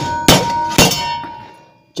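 Hammer blows on a sheet-metal body panel clamped in a vise, with two clanging strikes about half a second apart. The panel rings after them and the ringing fades over about a second. The panel is being bent cold, without heat.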